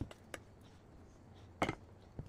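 Kitchen handling noise: a couple of light clicks, then a louder double knock about one and a half seconds in, as a plastic scoop and a stainless-steel pot of dosa batter are handled and the scoop is put down.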